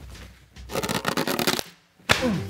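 Black disposable glove being pulled onto a hand: a rapid crackling rustle starts about half a second in, lasts about a second and stops abruptly.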